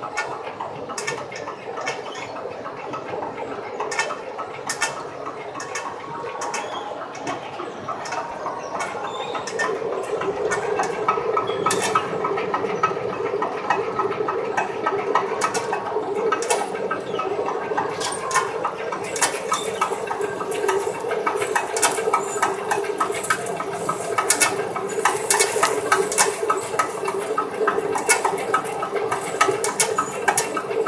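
Fabric inspection machine running, drawing a roll of lining fabric across its table. It makes a steady hum that strengthens about ten seconds in, with many small irregular clicks and ticks that grow busier in the second half.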